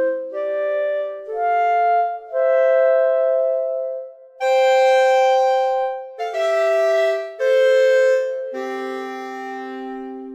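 Sampled clarinet from 8Dio's Clarinet Virtuoso software instrument playing marcato articulation: accented notes with firm attacks, mostly in two parts at once, the longest and loudest note in the middle.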